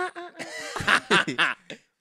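Men laughing in short laughs during a conversation, stopping just before the end.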